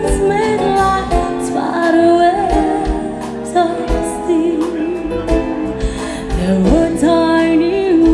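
Live band playing a slow song: a woman sings in long, wavering held notes over electric bass, drum kit and flute.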